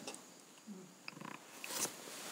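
A quiet pause between spoken sentences: faint breath and mouth noises from a close lapel microphone, with an intake of breath near the end.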